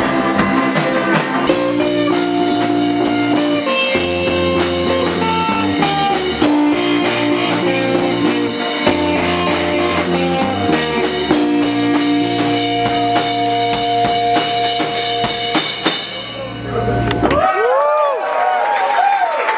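A rock band playing live, with electric guitars over a drum kit. The full band drops out near the end, leaving a few swooping guitar sounds.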